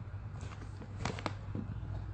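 Quiet room tone with a steady low hum and two faint clicks about a second in.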